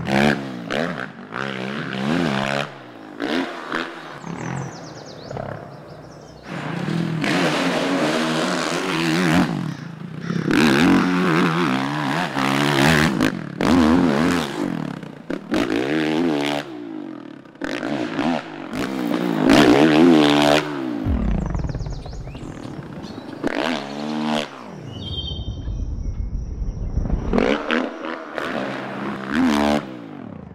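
A motocross dirt bike engine revving hard, its pitch climbing and falling again and again as the throttle is opened and shut. There are quieter lulls about two-thirds of the way through.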